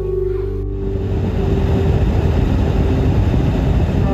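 Background music, with a rushing, rumbling noise like a vehicle driving on a highway that comes in about a second in and covers the music until near the end.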